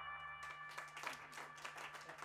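The last sustained guitar and synth chord of a live band's song dies away and stops about half a second in. Scattered clapping from a small audience follows.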